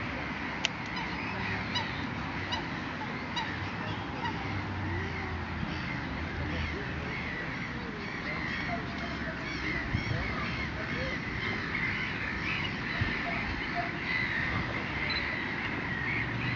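A dense chorus of many wild birds calling and chattering at once, with a run of high, evenly spaced notes about one a second in the first few seconds.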